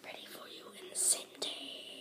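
A boy whispering breathily, with no voiced pitch, and a sharp hiss about a second in.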